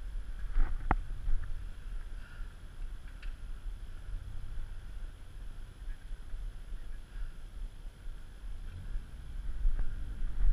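Low, unsteady rumble of wind buffeting the camera microphone, mixed with a faint hum of street traffic. A single sharp click about a second in.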